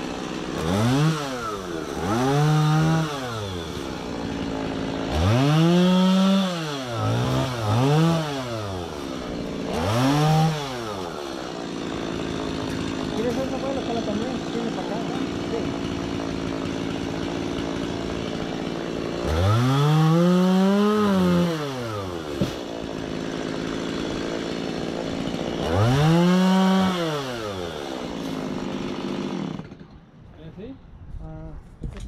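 Chainsaw idling, revved in about eight throttle bursts, each rising and falling in pitch over one to three seconds.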